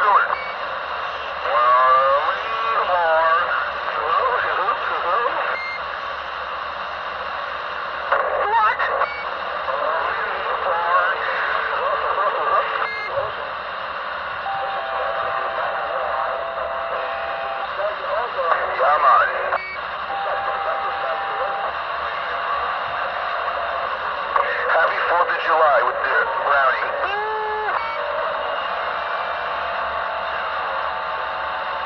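CB radio receiver playing voices through a constant hiss of static, the voices too garbled for the words to come through. Steady whistling tones sound over them through the middle stretch.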